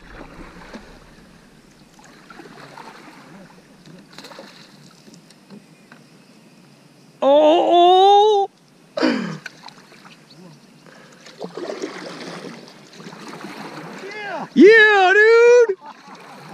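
Faint splashing of water around the kayaks while a bass is fought alongside, broken by two long excited yells, one about seven seconds in and one near the end.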